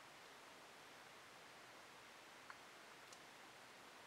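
Near silence: faint steady hiss of room tone, with a couple of tiny clicks.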